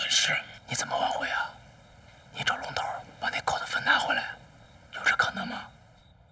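A man whispering in Mandarin, in three short phrases with pauses between.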